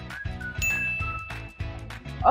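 A bright electronic ding, one held tone starting about half a second in and lasting about a second: an edited sound effect marking a correct quiz answer, over background music with a steady beat.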